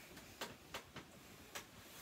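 Faint, irregular clicks, about five in two seconds, over quiet room noise: small handling and movement sounds as a person moves about in front of the camera.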